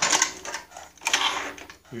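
Irregular metallic clattering and rattling as a Snapper rear-engine rider's chain case is wiggled off its shaft.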